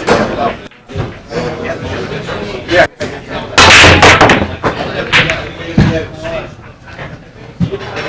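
Nine-ball break shot: about three and a half seconds in, the cue ball hits the racked balls with a loud crack and they scatter. A few sharp ball clicks follow over the next two seconds.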